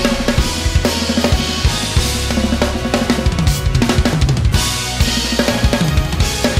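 Acoustic drum kit played hard in busy fills on the snare and toms, with bass drum and Meinl Byzance cymbals, over a backing track with a sustained bass line.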